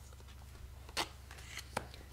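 Cardboard oracle cards being handled as a card is drawn from the deck and laid on a notebook page: a short, sharp tap about a second in and a lighter click near the end.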